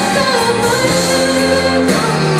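A woman singing live into a microphone over instrumental accompaniment of held chords and bass notes, her voice gliding between sustained pitches.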